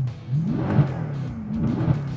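Mercedes-Benz C63's 6.2-litre V8 revved in short blips about once a second, with the Fi-Exhaust valvetronic cat-back's valves open in race mode.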